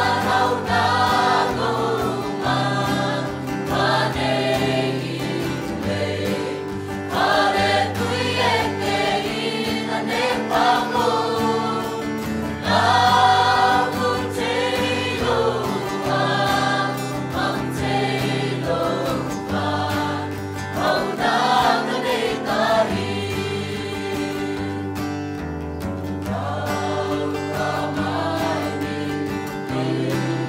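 Mixed church choir of women and men singing a gospel hymn in parts, over sustained low notes that change every couple of seconds.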